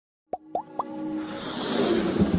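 Intro sting sound effects: three quick pops, each rising in pitch, about a quarter second apart, then a whoosh that swells and builds.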